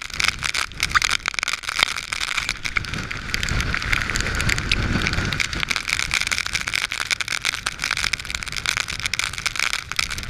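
Storm-force wind buffeting the camera microphone in torrential rain, with constant rapid spattering and a deeper rumbling gust that swells up around the middle.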